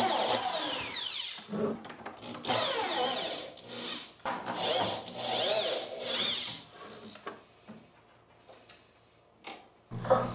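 Corded electric drill backing screws out of a wooden cabinet door. It runs in four or five short bursts, its motor pitch falling and rising as the trigger is squeezed and eased, and it stops about seven seconds in.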